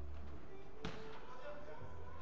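A single sharp thud of a football impact, a little under halfway through, in an echoing indoor hall.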